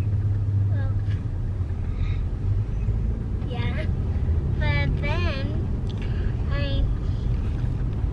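Steady low rumble inside a car's cabin, with a young child's high-pitched chatter in short bursts partway through and again near the end.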